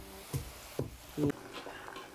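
A few soft thuds of a wooden pestle in a wooden mortar (tacú), pounding toasted green plantain into flour, with a single spoken word a little past the middle.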